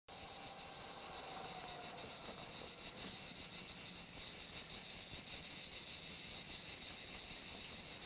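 Cicadas buzzing steadily and high in summer pine scrub, with a faint car engine underneath as the car drives up a dirt track.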